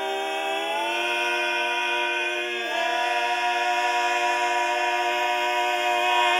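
Male barbershop quartet singing a cappella, holding the long closing chord of the song. One voice moves up about a second in and the chord shifts again near three seconds, then it is held, a little louder, to the end.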